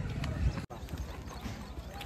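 Footsteps crunching through dry grass and twigs in an irregular patter of small ticks, over faint distant voices. The sound breaks off abruptly about two-thirds of a second in before the steps begin.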